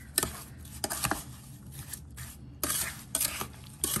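Wooden spoon stirring diced tomatoes and sugar in a stainless steel saucepan, knocking and scraping against the pan in irregular strokes.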